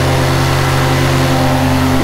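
Backpack paramotor engine and propeller running at a steady speed.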